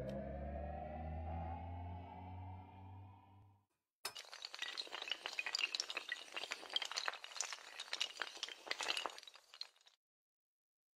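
Intro sound effects: a low drone rising slowly in pitch that fades away about three and a half seconds in. Then a dense clatter of many small hard pieces, like a cascade of tiles tumbling, runs for about six seconds.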